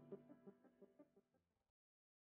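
Faint tail of intro music with short plucked notes, fading out and cutting to silence about one and a half seconds in.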